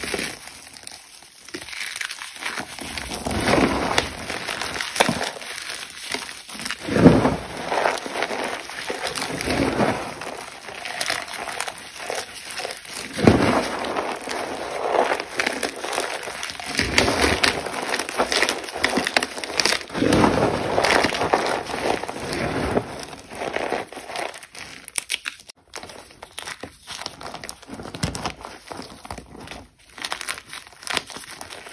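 Dried cornstarch chunks crunching and crumbling as hands squeeze them, in uneven bursts with the loudest crunches about seven and thirteen seconds in. The crunching thins out near the end.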